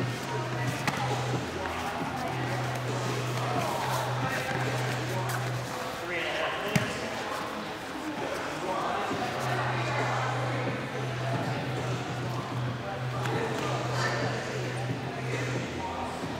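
Background chatter of many voices in a large gym hall, with a steady low hum that drops out and comes back, and one sharp knock about seven seconds in.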